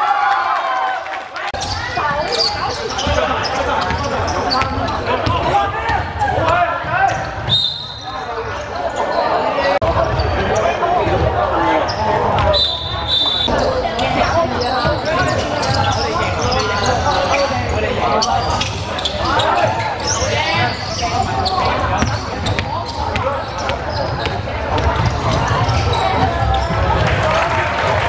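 Basketball being dribbled and bounced on a gym floor, players' voices calling during play, and two short, high, steady blasts of a referee's whistle, about eight and thirteen seconds in.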